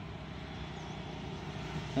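Steady, even hum of many honeybees foraging among the blossoms of flowering coffee trees.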